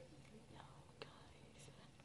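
Near silence: faint whispering with a soft tick about a second in, over a low steady hum.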